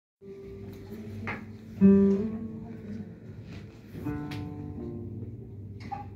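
Nylon-string classical guitar played fingerstyle: slow, sparse plucked notes and chords, each left to ring, the loudest about two seconds in.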